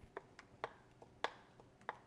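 Faint, scattered clicks and taps of a wooden spoon against a bowl as thick tomato sauce is scooped and scraped out, about five of them, the sharpest a little past halfway.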